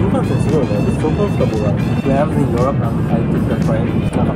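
Conversation with background music, over the steady low rumble of a Shinkansen passenger cabin.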